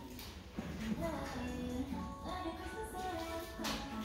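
Faint background music: a melody of held notes that step up and down in pitch.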